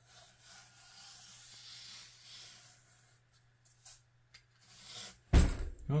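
Fingers rubbing low-tack painter's tape down into a groove on a foam-board base, a soft brushing rub, then a few light clicks and a sudden loud thump a little after five seconds, with a steady low hum underneath.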